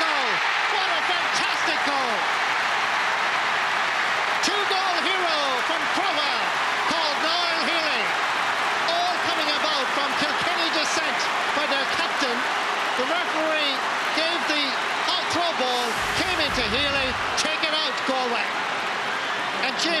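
Large stadium crowd cheering and clapping after a goal, with many voices shouting over a steady wash of applause.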